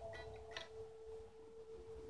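A single electric guitar note ringing faintly as one steady tone, with a few light string clicks over it.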